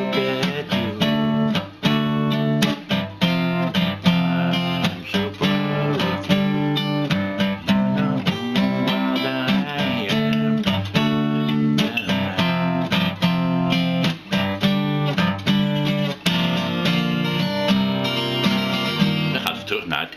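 Steel-string acoustic guitar with a capo, strummed in a steady rhythm through a chord progression of barre chords.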